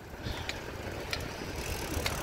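Bicycle rolling along a paved street: steady road and wind noise with a few light clicks and rattles from the bike, the noise growing a little louder near the end.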